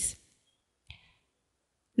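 A single faint computer-mouse click about a second in, amid near silence.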